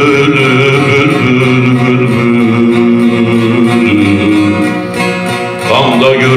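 A bağlama (long-necked Turkish saz) being played as a man sings a Turkish folk song, drawing out long held notes that shift slowly in pitch. The sound dips briefly near the end before a new phrase comes in.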